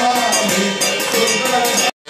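Devotional aarti music: voices singing over a fast, even rhythm of ringing metal percussion. The sound cuts off abruptly just before the end.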